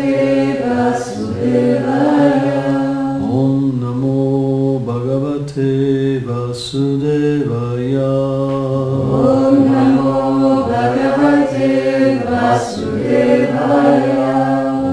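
A man chanting a Sanskrit devotional mantra in a slow melody, holding long notes with gentle rises and falls in pitch.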